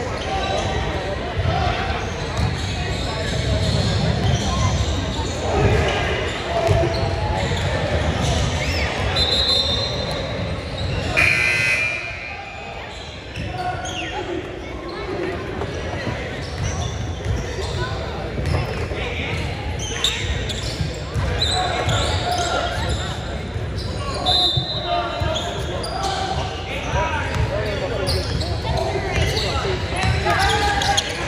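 Basketballs bouncing on a hardwood gym floor amid many voices talking, in a large echoing sports hall. Short high-pitched squeaks come through twice, and a brief higher tone about halfway through.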